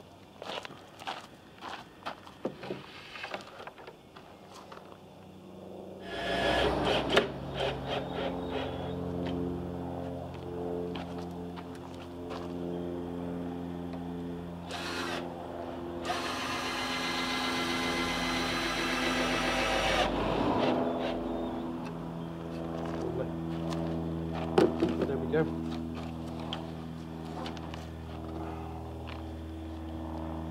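Knocks and handling of timber on a workbench, then a steady low hum from about six seconds in. In the middle, a cordless drill runs for about four seconds, driving a screw into the pine frame.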